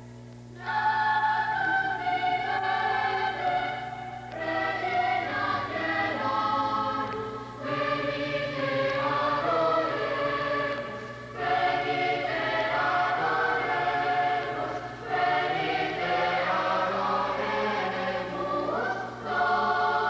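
Live band music with several voices singing together in phrases of about four seconds each, separated by short breaks.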